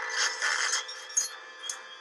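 Horror film soundtrack playing back: a few short scraping noises over a faint steady drone.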